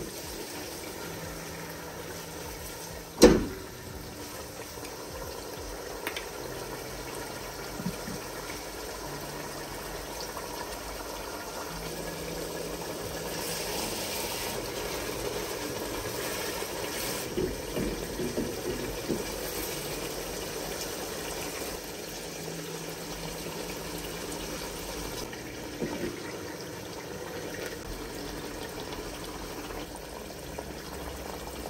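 Fish fillets and marinade simmering in a pot, with a steady bubbling and sizzling hiss. About three seconds in there is one sharp knock, and there are a few light clicks from a wooden spoon against the pot in the second half.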